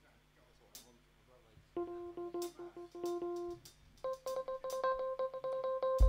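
A musical instrument sounding a single held note with rapid, evenly repeated strokes over it, then switching to a higher held note about four seconds in, as musicians get ready to play.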